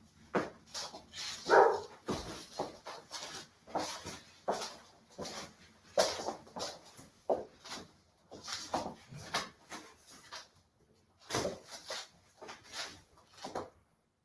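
Irregular soft knocks, taps and scuffs of feet and a plastic hoop on a wooden floor as the hoop is stepped into, rolled and passed over the body, with a brief pause in the movement sounds two-thirds of the way through.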